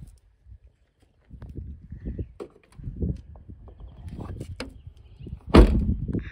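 Handling and rustling in a car trunk, then the trunk lid of a 2008 Chevy Impala slammed shut with one loud thump near the end.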